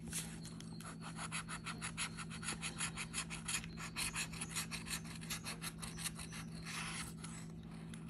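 A metal scratcher tool scraping the coating off a lottery scratch-off ticket in quick, repeated back-and-forth strokes, several a second, which thin out near the end.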